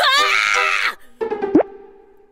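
Cartoon sound effects over background music: a sudden loud pitched sound that bends and lasts about a second, then a quick upward swoop about halfway through, after which a quieter steady tone fades away.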